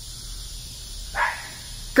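A husky gives a single short bark about a second in, over a steady low hiss.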